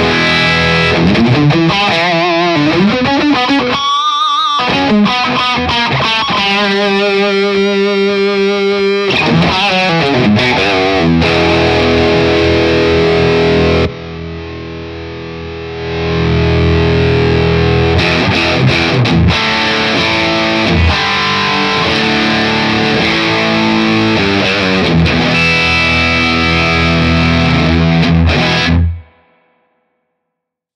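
Fender Telecaster played through a breadboarded op-amp distortion circuit, heavily distorted chords and riffs, with the clipping diodes switched into the op-amp's feedback loop for softer clipping. The playing drops much quieter for about two seconds midway, then resumes and cuts off shortly before the end.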